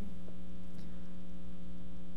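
Steady electrical mains hum, a low buzz made of several even tones, carried through the sound system.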